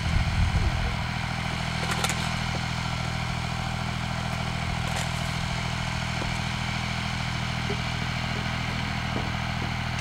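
Small Massey Ferguson farm tractor's engine running steadily at a low, even speed, with a brief louder burst in the first second and a few sharp clicks.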